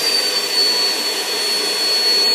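Vacuum cleaner running steadily: a rush of air with a thin, steady high whine over it.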